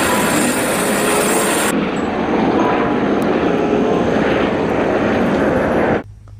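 A Eurocopter EC130 helicopter running on the ground, its engine and rotor going steadily. The hiss dulls suddenly a little under two seconds in.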